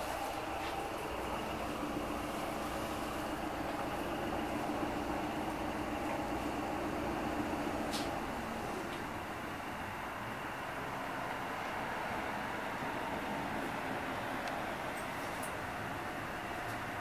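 Cabin noise inside an LVS-97K articulated tram: a steady rumble from the rails and running gear with a droning tone from the traction drive. The tone fades about halfway through as the tram slows, leaving a quieter, steady rumble and hum. There is a single sharp click about halfway through.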